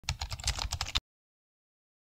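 Computer keyboard typing sound effect: a quick run of about a dozen key clicks lasting about a second, then cutting off suddenly.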